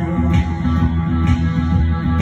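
Live rock band playing an instrumental passage: electric bass and electric guitar through amplifiers, with sharp strokes on the beat about once a second.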